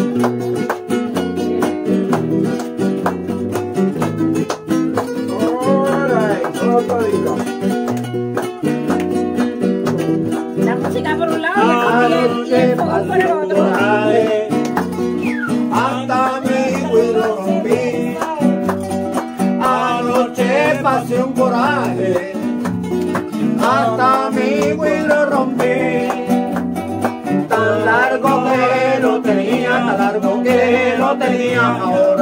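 Two nylon-string classical guitars playing a Puerto Rican folk tune together, chords and melody running steadily throughout. From about six seconds in, a voice joins at times with a wavering sung melody over the guitars.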